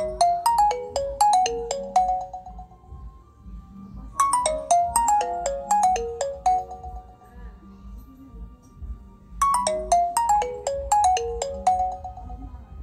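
Mobile phone ringtone: a quick run of short notes stepping downward in pitch, played three times with pauses of about two seconds between.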